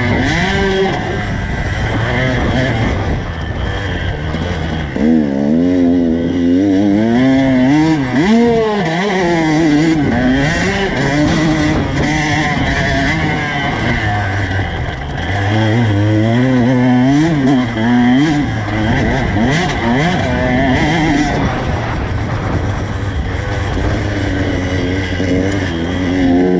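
Two-stroke dirt bike engine being ridden hard, its pitch climbing and dropping over and over as the throttle is opened and closed.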